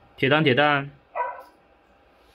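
Xiaomi CyberDog 2 robot dog's speaker giving a bark-like woof sound in two parts, followed by a shorter, higher call about a second in.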